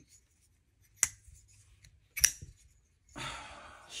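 Titanium folding knife's blade action: two sharp metallic clicks about a second apart as the blade is worked open and shut in the hand, then a soft rustle of the hand on the handle near the end.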